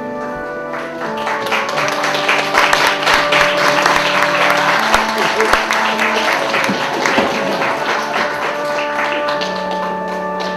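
Audience applauding over music of held, changing chords; the clapping swells about a second in and fades away near the end, leaving the chords.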